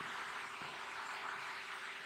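Steady low background noise: an even hiss with a faint steady hum underneath, unchanging through the pause.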